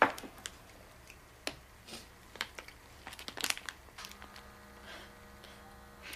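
Soft, scattered crinkles and clicks of a snack wrapper being handled, with a faint steady hum in the last two seconds.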